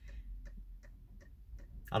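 Faint, even ticking, about three ticks a second, over a low steady hum.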